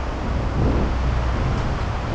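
Steady rumble and wind noise of a moving vehicle, with a deep low drone under an even hiss.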